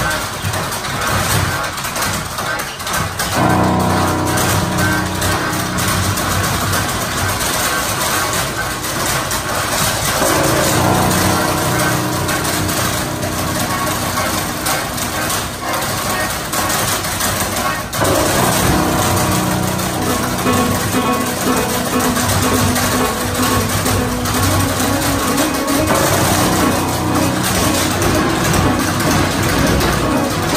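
Improvised music: a melodica holds sustained chords that begin a few seconds in and change every several seconds, over the percussive clicks of tap dancing on a wooden board.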